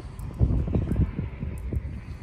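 Wind buffeting the microphone outdoors: an uneven, gusty low rumble.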